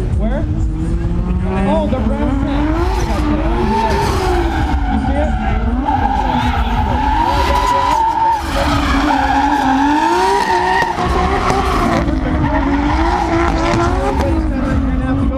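Drift car's engine revving up and down over and over as it slides, with tyres screeching on the tarmac. The sound stays loud and steady throughout.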